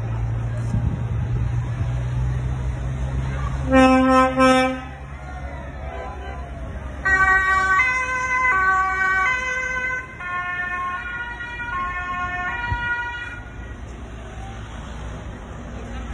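A heavy lorry's engine running steadily, with one loud horn blast about four seconds in. From about seven seconds, a two-tone siren alternates between a high and a low note roughly twice a second for several seconds, then stops.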